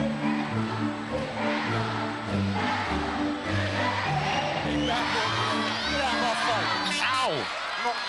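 Arena music with a steady bass line over a cheering crowd. Near the end, a sound slides steeply down in pitch.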